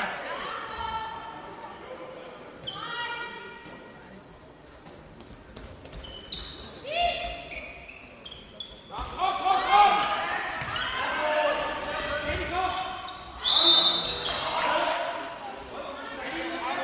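A handball being bounced and thrown on a sports-hall floor during play, with repeated knocks, and players' voices calling and shouting over it, busiest in the second half.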